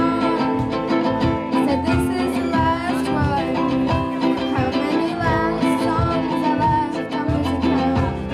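Live band playing a pop song through a PA: strummed ukulele and guitars over a steady drum beat, with a sung vocal line.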